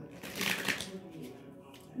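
A deck of tarot cards being shuffled by hand, a brief rapid rustle of cards about half a second in, then fainter handling.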